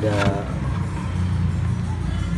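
A steady low motor hum, with a short voice sound at the very start.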